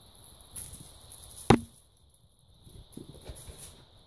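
A single sharp knock about a second and a half in, against faint rustling.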